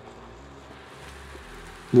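Quiet, steady background hiss of the room with no distinct events. A man's voice begins right at the end.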